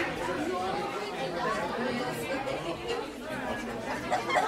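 Many people chattering at once: overlapping voices with no single clear speaker.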